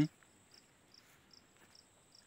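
Faint insect chirping in a steady rhythm of short, high chirps, about three a second, over a thin steady high whine.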